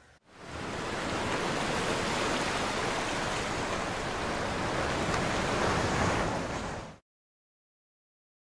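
A steady rushing-water sound effect, like surf or a waterfall, under the logo animation: it fades in just after the start, holds even, and cuts off suddenly about seven seconds in to dead silence.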